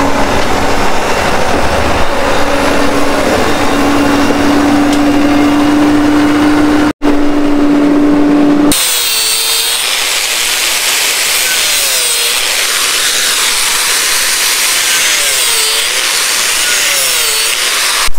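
A diesel loader tractor's engine running steadily as it climbs onto a flatbed trailer. About nine seconds in it gives way to an angle grinder cutting the old feed-pan slides off a poultry house feed line, its pitch dipping several times as it bites.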